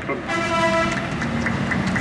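A vehicle horn sounding a steady held note for about a second, followed by a lower steady tone.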